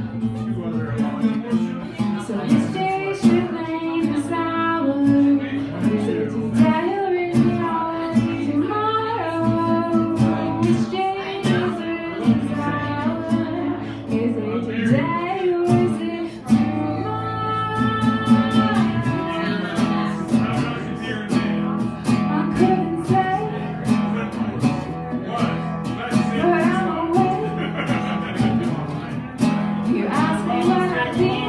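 A woman singing while strumming an acoustic guitar, a live solo song with a steady strummed rhythm under the melody.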